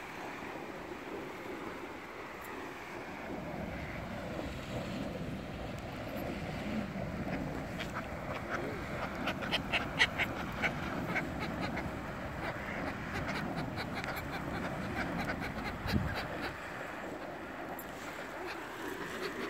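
Waterbirds at a pond, ducks and gulls, calling over a steady outdoor background noise. The calls come thick and fast in the middle, as short sharp sounds several times a second.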